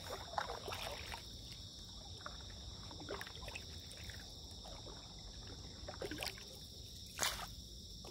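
Paddle strokes on calm water from a stand-up paddleboard: the blade dipping in and pulling through with soft splashes and dripping every second or two. A single sharp knock sounds near the end.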